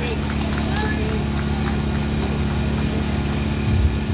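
Portable generator engine running steadily, a constant low hum.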